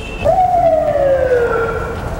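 A siren gives one wail: its pitch jumps up sharply, then slides slowly down over about a second and a half.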